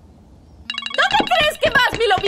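Smartphone ringtone sounding for an incoming call, starting a little under a second in, with children's high voices calling out over it.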